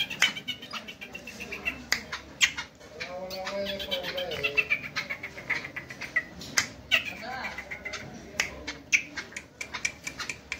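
Caged black francolin calling, with pitched, gliding cries, among many sharp clicks and taps.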